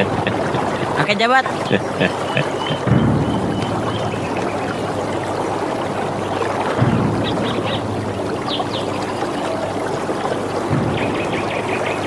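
Steady rushing of a stream running over rocks, an even hiss of flowing water.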